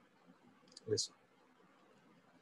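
Two short clicks close together about a second in, the second louder, against faint room tone.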